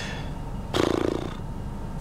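A man's short wordless groan or sigh, under a second long, about halfway through, over the steady low rumble of a car cabin.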